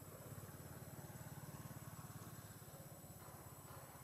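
Faint, steady low rumble of an engine running at an even speed, with a fast regular pulse, slightly louder in the middle.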